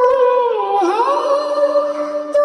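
Music: a high voice singing a long wordless note that wavers and dips in pitch about a second in, over a held accompaniment note.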